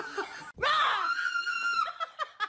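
A woman's high-pitched scream of fright, held for over a second, starting about half a second in after a few short laughing bursts.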